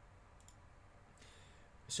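Two faint computer mouse clicks close together about half a second in, over quiet room tone.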